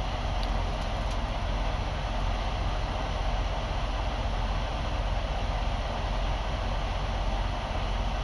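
Steady low rumble with an even hiss inside a vehicle cab: the engine idling with the ventilation fan running.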